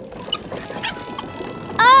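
Cartoon sound effects for a wobbling pedal go-kart: a few short high blips and light clatter over soft background music, then a child's voice cries out near the end.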